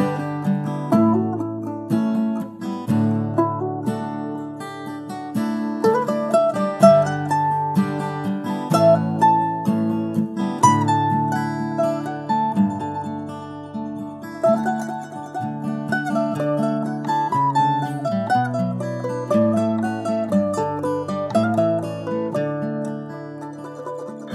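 Instrumental acoustic string music: a quick plucked mandolin melody over held guitar chords that change every second or two.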